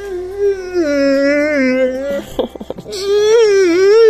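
A dog vocalising in long, wavering howl-like whines: one drawn-out call, a short break about two seconds in, then a second long call.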